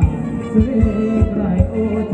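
Live band playing upbeat ramwong dance music, with a heavy kick drum on a steady beat about three times a second under a bass and melody line.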